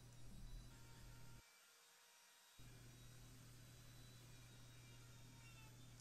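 Near silence: room tone with a faint steady low hum, which drops out for about a second partway through.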